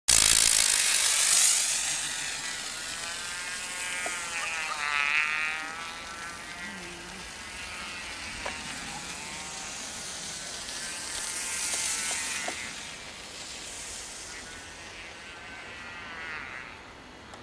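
Rapier L2 solid-fuel rocket motor in a model BAC Lightning hissing as the model is launched and climbs away. The hiss starts suddenly, is loudest in the first two seconds and then fades as the model gets farther off. A whistle wavers up and down in pitch around five seconds in.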